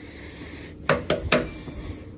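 Three quick, sharp clicks of hard objects knocking together, about a second in, within half a second of each other, over a quiet room background.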